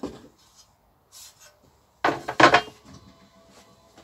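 Steel end panel of a transformer case scraping against the sheet-metal housing as it is pulled off. There is a short, faint scrape about a second in and a louder, longer scrape at about two seconds.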